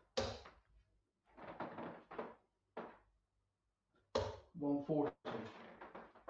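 Indistinct, unscripted speech in a small room, in short broken bursts with sudden onsets and a few knock-like sounds among them.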